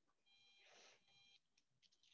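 Near silence on the meeting's audio feed, with a very faint, high, steady electronic tone lasting about a second.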